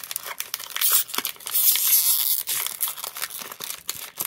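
Foil wrapper of a Pokémon card booster pack being torn open and crinkled by hand: a run of sharp crackles, with a denser stretch of tearing about two seconds in.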